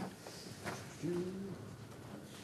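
A person's low held "mm" in a level tone for about half a second, about a second in, after a couple of sharp clicks.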